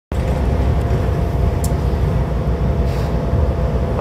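Cabin noise inside a New Flyer Xcelsior XD60 articulated bus: a steady low drone of engine and road noise, with a couple of light rattles.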